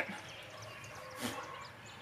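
Quiet outdoor background with faint, short bird chirps, and one brief soft rustle a little over a second in.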